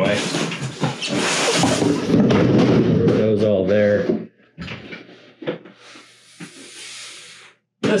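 A man laughing loudly for about four seconds, then quieter scattered knocks and rustling as cardboard boxes are moved around.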